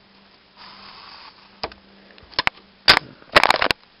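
A marker drawn briefly across cardboard along a wooden ruler, a short scratchy stroke, followed by several sharp clicks and knocks as the ruler and marker are handled and set down.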